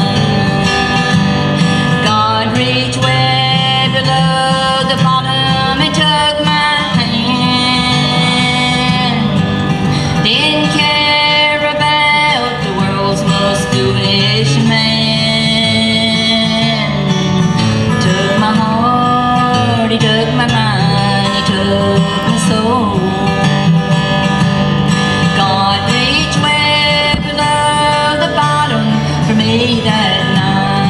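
Live bluegrass band playing, acoustic guitar strumming under a melody line that slides between notes.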